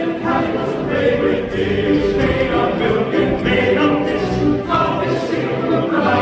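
Men's choir singing in several-part harmony, without clear words, in a lively passage that runs straight through.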